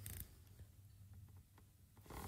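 Near silence, with a short rustle right at the start and a few faint mechanical clicks from a DSLR camera being handled.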